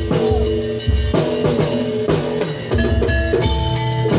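Live tongklek percussion ensemble playing: pitched gongs and bronze pot-gongs ringing in sustained tones over a steady drum beat about twice a second, with sharp drum strokes.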